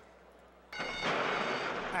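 A hushed pause, then about two-thirds of a second in the starting gate springs open with a sudden crash and the start bell ringing briefly. This is followed by a loud, steady rush of noise as the horses break from the gate.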